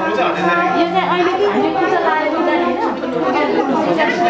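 People talking over one another: a group's overlapping chatter with no pause.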